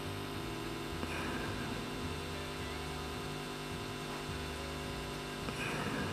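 A steady low electrical hum with a faint hiss under it. It holds at one even level, with no clicks or other events.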